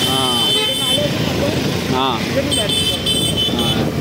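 Road and traffic noise heard from a moving scooter in city traffic, with a voice in the first second and a run of short high-pitched beeps over the last second and a half.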